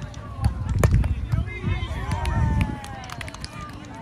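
Players' voices calling out during a grass volleyball rally, with a sharp slap of a hand on the ball a little under a second in and dull low thuds that fade out near three seconds.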